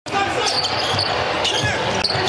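Basketball dribbled on a hardwood court: a few bounces, roughly half a second apart, in a large, nearly empty arena.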